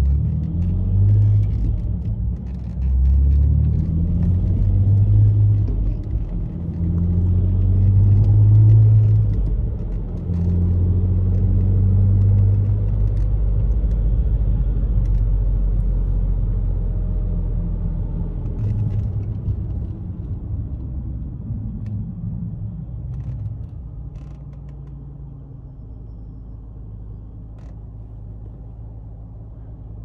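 Ford Mondeo ST220's 3.0 V6, with no catalytic converters, heard from inside the cabin as the car accelerates hard. It revs up through the gears, about four pulls with a dip at each upshift, then holds a steady drone before easing off to run quieter at low revs for the last several seconds.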